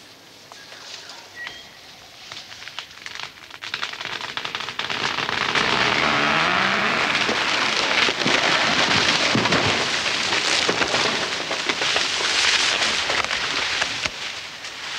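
Foliage and branches of tall eucalyptus trees rustling and crackling. The sound builds over the first five seconds and then stays loud, thick with small snaps and cracks.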